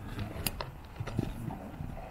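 Hooves of a young unbroken Hispano-Arab mare thudding on arena sand as she jumps about under her first saddle, with a few sharp knocks about half a second and a second in.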